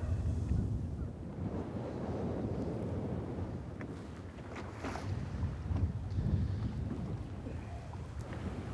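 Wind on the microphone, a steady low rumble, with choppy water lapping against a fishing boat's hull and a few faint clicks.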